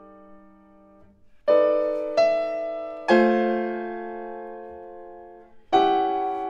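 Steinway grand piano played slowly: an earlier chord dies away, then chords are struck about a second and a half and two seconds in, another at three seconds is left to ring for over two seconds, and a new chord comes near the end.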